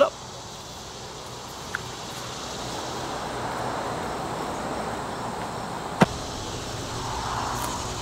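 Outdoor ambience: a steady noise that swells through the middle, with a single sharp click about six seconds in.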